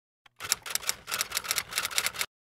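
Typewriter sound effect: a quick run of sharp key strikes, about six a second, starting about half a second in out of dead silence.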